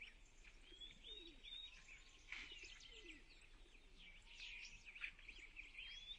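Faint birdsong: many short chirps and whistles from several small birds, repeating throughout.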